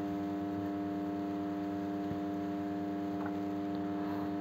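A steady held musical drone of several sustained pitched tones, the accompaniment of a devotional chant carrying on between sung lines.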